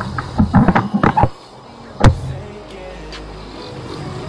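Motorcycle engine running steadily at road speed under wind noise. A few short pitched sounds come in the first second or so, and a single sharp click about two seconds in.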